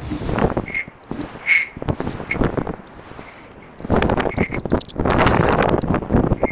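Wind buffeting the camera microphone as a NAMI Burn-E 2 Max electric scooter rides up a parking-garage ramp, with a few brief high squeaks. The wind noise grows much louder about four seconds in as the scooter speeds up onto the open roof.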